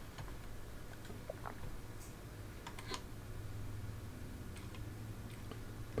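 A handful of faint, scattered clicks from a computer mouse and keyboard as the editing software is worked, over a low steady hum.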